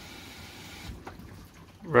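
Faint steady hiss of water from a garden hose running over the outside of the body, heard from inside the stripped rear quarter of a Toyota LandCruiser 80 Series during a leak test. The hiss drops away about a second in, and a man's voice starts near the end.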